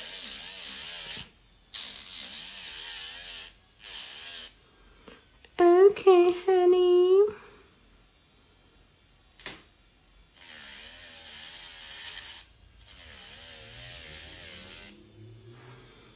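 Electric nail drill spinning a sanding-disc bit against an acrylic nail, in several bursts of high grinding hiss as the nail is pressed on and lifted off, with the motor's whine wavering under the load. About six seconds in, a brief voice sound of three short held notes is louder than the drill.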